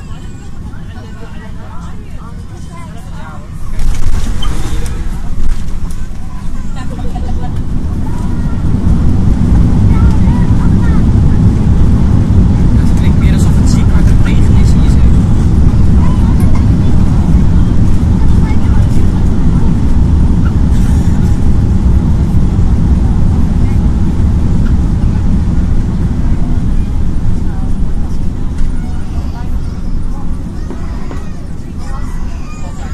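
Cabin noise of an Airbus A380 airliner during its landing approach: a sudden loud bump about four seconds in, then a deep rumble of engines and airflow that builds and holds, easing slightly near the end.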